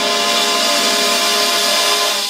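Marching band of brass, woodwinds and percussion holding a loud sustained chord that swells and is cut off right at the end, the show's final release.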